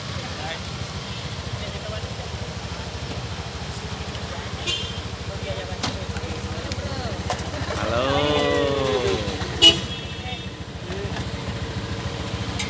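A vehicle engine idling close by, a steady low rumble with a fast even pulse. A voice calls out "halo" about eight seconds in, and a sharp click comes just after.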